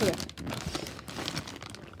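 Plastic zip-top bags crinkling and rustling as clothes packed in them are rummaged through by hand, a run of irregular crackles.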